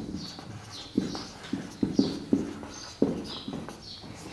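Whiteboard marker squeaking on the board as a word is written: a string of short squeaks, one per stroke, starting about a second in.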